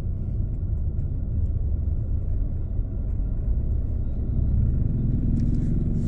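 Car engine and road rumble heard from inside the cabin while driving slowly: a steady low rumble, with the engine note rising slightly and getting a little louder about four to five seconds in.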